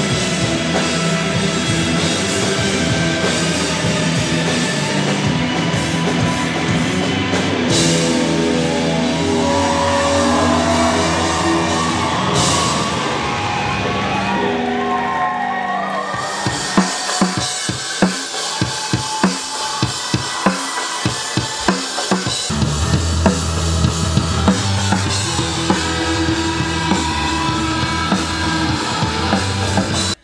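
Post-punk rock band playing: drum kit and electric guitar in a full, loud mix. About halfway through it drops to sharp drum hits with the low end gone, and the bass comes back in a few seconds later.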